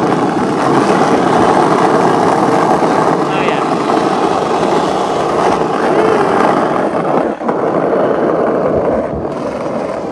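Skateboard wheels rolling fast on asphalt with a steady, loud rolling noise and wind on the microphone, dipping briefly about seven seconds in.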